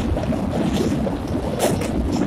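Passenger train running across a steel truss rail bridge: a steady rumble, with wind buffeting the microphone at the open window. Two brief hissing rushes come near the end.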